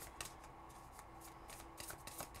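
Faint handling of a tarot card deck in the hands, with a few soft card clicks near the start and the end.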